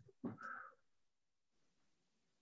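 Near silence: room tone, broken once just after the start by a brief faint sound lasting about half a second.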